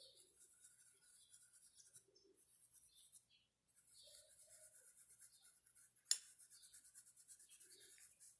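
Near silence with faint rubbing of a paintbrush on fabric, and a single short click about six seconds in.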